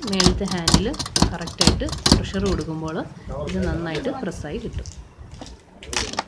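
A person talking throughout, with several sharp clicks and knocks mixed in during the first two seconds or so.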